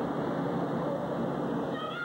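Steady murmur of a small crowd. Near the end comes a single high-pitched yell that slides sharply down in pitch.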